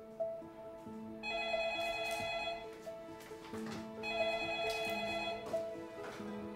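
A telephone ringing twice, each ring lasting about a second and a half, over soft background music.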